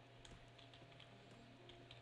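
Faint typing on a computer keyboard: several scattered keystroke clicks over a low steady hum.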